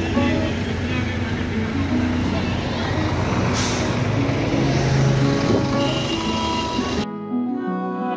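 Bus and traffic ambience: vehicle engines running, with voices and pitched tones mixed in, and a short sharp hiss about three and a half seconds in. About seven seconds in it cuts abruptly to background music.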